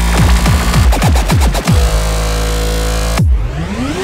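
Electronic dance music with a driving beat of repeated falling bass sweeps over sustained synth tones. About three seconds in the beat breaks off and a rising sweep begins.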